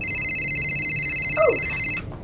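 Mobile phone ringing: an electronic trilling ringtone of a few steady high tones that starts and cuts off suddenly.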